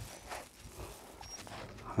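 Faint, irregular scratchy strokes of a metal slicker brush drawn through a wolf's coat.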